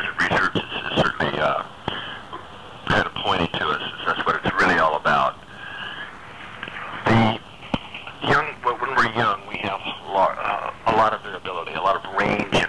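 Speech only: a voice talking steadily in a thin, telephone-quality sound.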